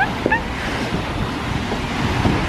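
Wind rushing over the microphone, a steady hiss, with a few short rising chirps at the very start.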